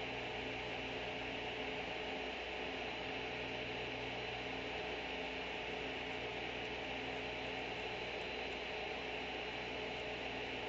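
Steady electrical hum with a faint hiss and no other sound. The streamed film's audio has stopped while its picture stays frozen, typical of progressive-download playback stalling.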